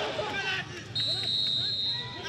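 Referee's whistle blown in one long, steady, shrill blast of about a second, starting about halfway through: the signal for a penalty kick.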